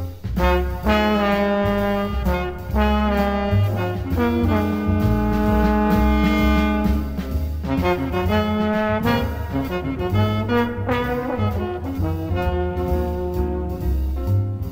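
Small jazz group playing: alto saxophone and trombone hold long notes in harmony over piano, upright bass and drums.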